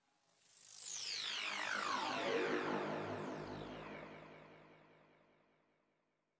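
Synthesizer sound effect from a wavetable patch built on the 'FreqShift ART' frequency-shift wavetable. A dense cluster of tones glides down from very high to low over about five seconds. It swells in during the first second, picks up a low rumble about halfway, and fades out near the end.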